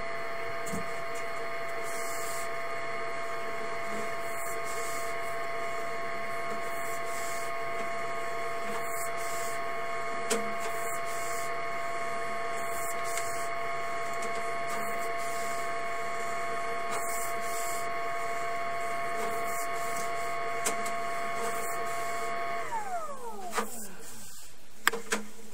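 An electric motor whines steadily at a few fixed pitches, then winds down sharply in pitch and stops about a second before the end. A few light clicks sound over it.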